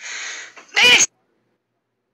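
A woman's cat imitation: a hiss, then a short high meow-like call that cuts off suddenly about a second in.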